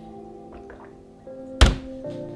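Background music of held, steady tones, with one sharp thunk about one and a half seconds in, the loudest sound here.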